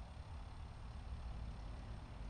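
Faint, steady low rumble of outdoor background noise, with a light hiss above it.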